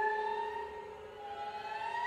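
Contemporary music for violin and electronics: sustained tones sliding slowly in pitch over a steady lower held tone, dipping in loudness about a second in before the pitch climbs again near the end.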